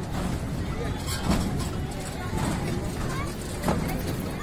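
Busy fairground noise: a steady low rumble with scattered voices and chatter, and a few short knocks.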